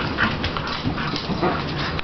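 An excited dog making several short whines, just after being asked if it wants to go outside.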